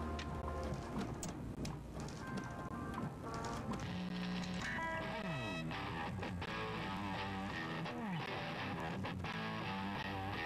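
Music with an electric guitar played through a small amplifier, with falling slide notes twice: once in the middle and once near the end.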